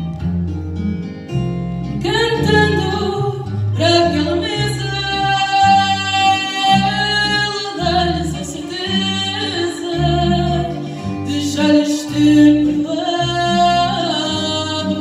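Live fado: a woman sings long held notes, entering about two seconds in, over a Portuguese guitar and classical guitars with a plucked bass line.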